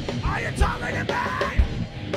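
Live rock music from a two-piece band: distorted electric guitar over a drum kit whose kick drum beats roughly every half second, with a high lead line that bends up and down in pitch.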